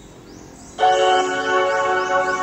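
Bell-like chime music cuts in suddenly about a second in: a bright, sustained chord of ringing tones with glittering chime runs over it.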